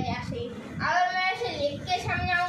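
A boy's voice: a short sound at the start, then one long drawn-out, sing-song syllable from about a second in.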